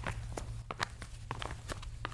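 Footstep sound effect: soft, slow, steady steps, about two or three a second, standing for the tortoise plodding along, over a faint low hum.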